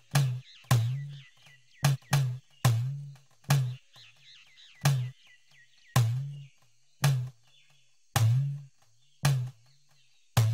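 Background score of deep drum strikes at an uneven pace, about a dozen in all, each with a short bend in pitch. Bird-like chirps sit behind them through roughly the first half.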